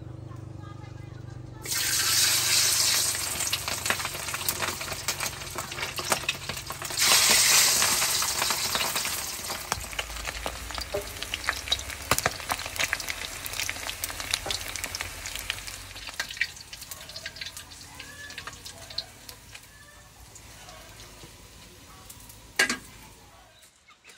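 A sizzle full of small crackles that starts suddenly, surges once more a few seconds later, then slowly fades, with a single sharp click near the end.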